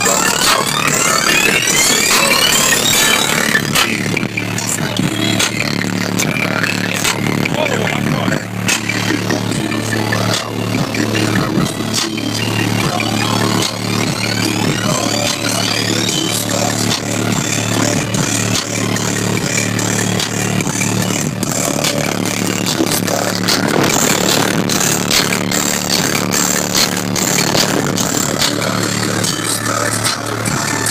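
Loud bass-heavy electronic music played through a competition car audio system of fifteen Sundown Audio SA-10 subwoofers driven by two Sundown Audio NS-1 amplifiers. A rising sweep plays near the start and again about halfway through.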